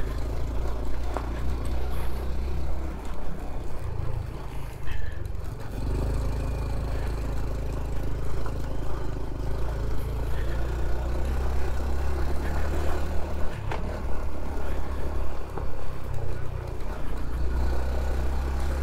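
Honda CT125 Trail's small single-cylinder four-stroke engine running steadily under way on a dirt road, easing off briefly about four seconds in.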